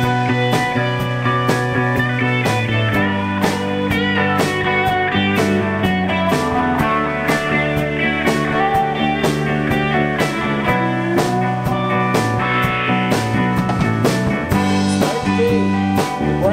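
Live rock band playing an instrumental passage: guitars over a steady drum beat.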